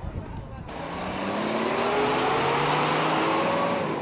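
A Toyota pickup truck drives past close by, its engine note rising steadily as it accelerates. The sound swells from about a second in and fades near the end.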